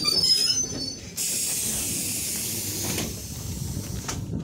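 ED9M electric train at a standstill at the platform: a brief high squeal in the first second, then a loud, even hiss of compressed air from the train's pneumatic system for about two seconds before it cuts off.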